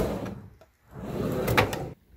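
Editing sound effects over a title card: a noisy hit that fades out over the first half second, then after a moment of dead silence a second noisy sound that swells and cuts off abruptly.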